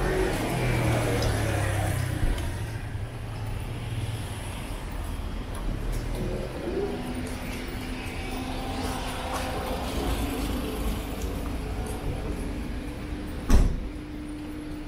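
City street traffic: car engines running and passing, with a steady low hum that changes pitch about halfway through. A single sharp thump near the end is the loudest sound.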